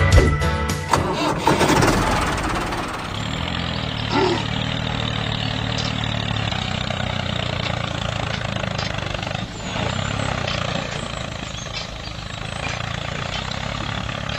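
Background music fades out over the first two seconds, giving way to a tractor engine running steadily at low revs.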